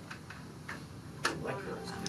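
About half a dozen light, irregular clicks, the sharpest a little past halfway.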